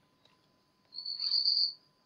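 An insect's short high-pitched trill about a second in, lasting under a second, over otherwise quiet room tone.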